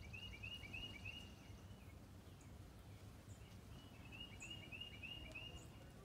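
Quiet outdoor background with a low rumble, over which a songbird sings two short phrases of quickly repeated whistled notes, one at the start and one about four seconds in.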